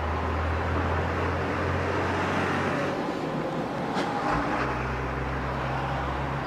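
Car engine and road noise heard from inside a moving car, a steady low drone whose pitch shifts about halfway through.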